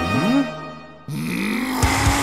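Edited-in sound effects over background music: a short rising swoop, then about a second in a sudden whooshing rush with a steady hum and low thuds near the end, the kind of whoosh laid under a blurred scene transition.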